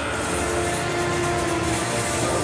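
Stadium ambience with music played over the public-address system: a single pitched note held for over a second above a steady crowd-and-arena noise.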